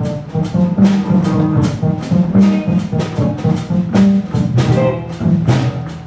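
Small jazz combo playing live: frequent drum and cymbal hits over bass notes, with electric guitar.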